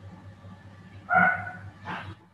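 Two short animal calls, the first about a second in and a shorter one near the end, over a faint low steady hum.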